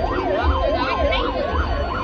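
A siren sound wailing up and down in pitch about twice a second, over a regular deep bass beat.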